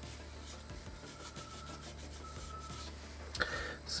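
Faint rubbing and handling noises, with quick scratchy strokes about a second in, over a steady low hum.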